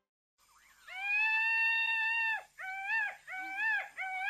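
A high animal call starts about a second in and is held steady for about a second and a half. It is followed by short calls that each rise and fall in pitch.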